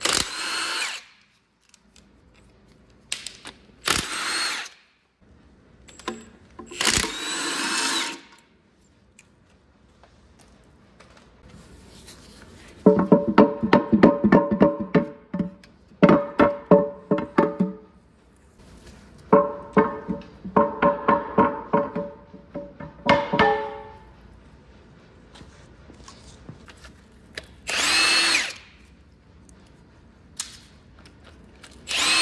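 Milwaukee M18 Fuel cordless impact wrench backing out flywheel housing and engine mount bolts on a Caterpillar C-10 diesel: short whirring runs of the motor near the start and again near the end, and in the middle two long stretches of rapid hammering as the wrench breaks bolts loose.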